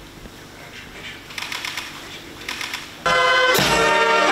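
Two short runs of quick clicks in a quiet hall, then brass band music cuts in suddenly and loudly about three seconds in.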